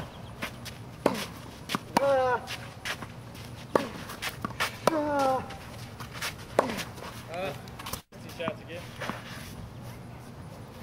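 Tennis rally on a hard court: the sharp pops of racket strings hitting the ball and the ball bouncing, coming every second or so. Two short voice sounds falling in pitch come about 2 s and 5 s in.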